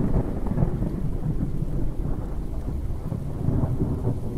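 Thunderstorm sound effect: a continuous low rumble of rolling thunder with rain, easing a little about halfway through.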